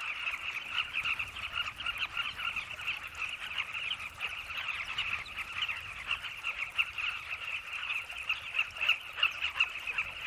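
A colony of carmine bee-eaters squawking, a dense, unbroken chatter of many short overlapping calls. These are excited alarm calls from birds mobbing a boomslang at their nest burrows.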